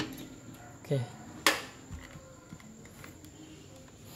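An ignition key being fitted into a Kubota L3602 tractor's key switch: one sharp metallic click about a second and a half in, with a few lighter clicks around it.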